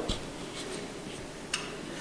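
A pause in the talk: quiet room tone with faint rustling and a single soft click about one and a half seconds in.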